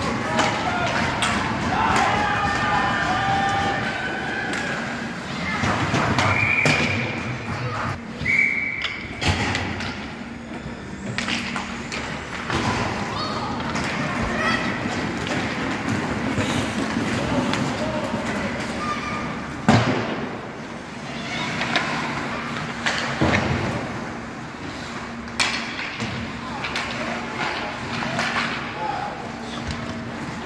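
Ice hockey play in an indoor rink: spectators' voices and shouts, with several sharp knocks of puck and sticks against the boards, the loudest about twenty seconds in, over a steady low hum.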